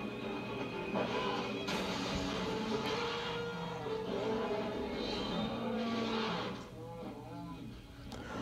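Film soundtrack music playing from a television, made of slow held notes that fade down near the end.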